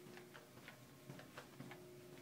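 Faint footsteps of a person walking briskly, about three steps a second, over a steady low hum.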